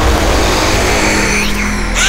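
Tense dramatic background score with a steady low drone, and a sweeping whoosh effect near the end.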